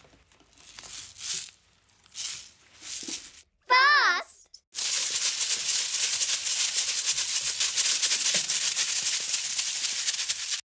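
Homemade plastic water bottle shakers filled with rice. For the first three seconds they are shaken slowly, a swish of rice about once a second. After a short voice call about four seconds in, they are shaken fast in a continuous rattle that stops just after the end.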